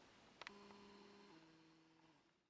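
Near silence, with a couple of faint clicks about half a second in and a faint low hum that steps down in pitch a little after halfway.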